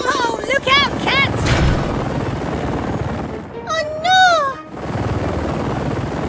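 Cartoon helicopter sound effect: a steady whirring rotor with a low rumble. Over it come two short sing-song character calls about a second in, and a longer call near the middle that rises and then falls.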